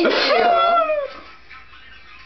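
A girl's high-pitched, drawn-out playful squeal of protest, gliding up and down for about a second, then stopping.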